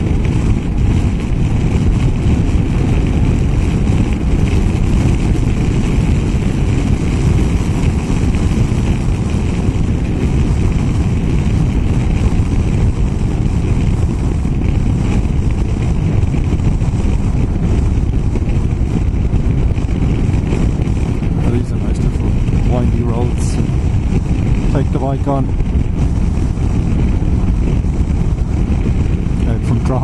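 Riding noise from a BMW F800GS motorcycle on the move at steady road speed: a dense, even rush of wind on the microphone, heaviest in the low range, mixed with engine and road noise.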